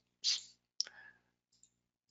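A single sharp computer mouse click a little under a second in, faint, just after a short breathy hiss.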